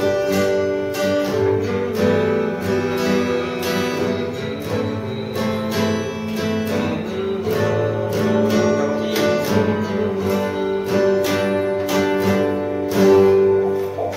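Steel-string acoustic guitar played solo, a steady run of chords plucked and strummed in rhythm, with a louder chord about a second before the end.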